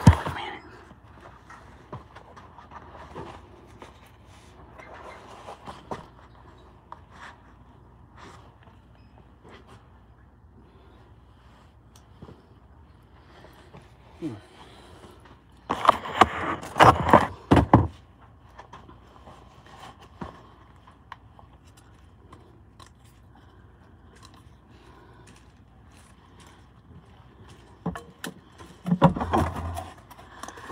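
Cardboard shoe box being handled and opened: a cluster of scrapes and thumps about halfway through, and another short burst near the end, over quiet room tone.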